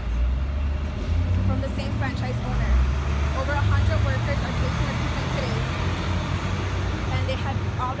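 Loud low rumble of road traffic on a city street, swelling a little around the middle, with a woman's voice speaking faintly underneath.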